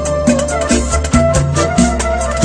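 Raï song playing: a steady percussion beat and bass notes under a held, slightly wavering melody line.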